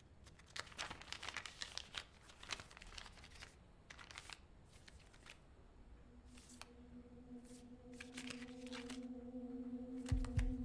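Paper rustling and crinkling as an envelope is handled and a stack of photographs is drawn out and leafed through, in quick clusters of crisp rustles, busiest in the first few seconds and again near the end. About six seconds in, a low steady hum comes in and slowly swells.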